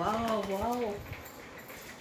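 A woman's drawn-out, wavering exclamation of admiration, "waah", ending about a second in, followed by faint rustling and light knocks of cardboard wallpaper rolls being handled.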